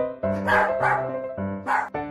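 A small poodle barking three short times at its own reflection in a mirror, about half a second in, just after, and near the end, over background music.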